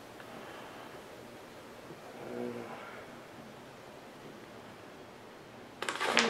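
Quiet room tone with a short murmured 'hmm' a little over two seconds in, then paper rustling as a packing slip is handled, starting just before the end.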